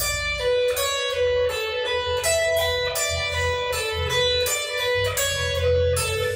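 Electric guitar playing a repeating B-minor pentatonic lick, picked notes mixed with legato slurs, in an even, unbroken run.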